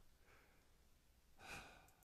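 Near silence, with one faint breath or sigh from the speaker about one and a half seconds in.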